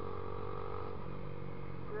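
Dafra Next 250's single-cylinder engine running at a steady cruise while the motorcycle is ridden along a road, with road and wind noise beneath it.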